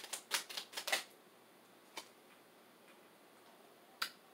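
Tarot cards shuffled by hand: a quick run of crisp card snaps, about five a second, that stops about a second in. A single faint tap follows about two seconds in.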